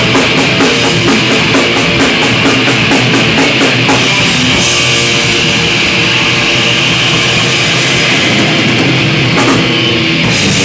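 A thrash metal band playing live and loud: distorted electric guitar, bass and drum kit. A quick, even beat on the cymbals runs for the first four seconds or so, then gives way to a more sustained cymbal wash.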